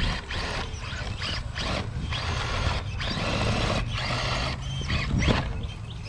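Scale RC rock-crawler truck's electric motor and geared drivetrain whining in short bursts of throttle as it crawls over rocks, starting and stopping every second or so. A steady low hum runs underneath.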